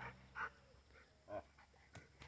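Dog vocalizing faintly twice, in two short sounds about a second apart.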